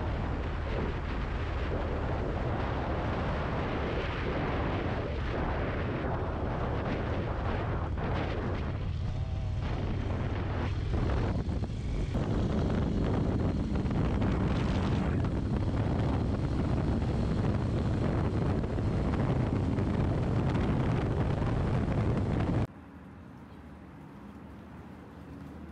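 Harley-Davidson Low Rider S V-twin running on the road, mixed with heavy wind rush on the microphone. It gets a little louder about halfway through and cuts off suddenly near the end.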